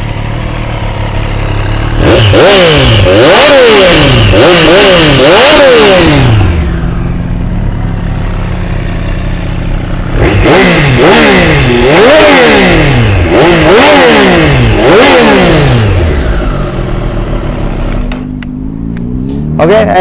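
2022 Triumph Street Triple 765 R's 765 cc three-cylinder engine on its standard exhaust, idling and then blipped in two runs of about four or five quick revs each, settling back to idle between them. The engine sound cuts off sharply near the end.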